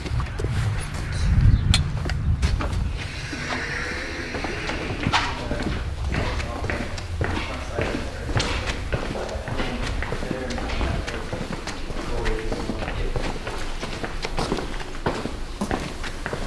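Footsteps and a glass door being opened, with a low thump about a second and a half in, over faint background voices and music.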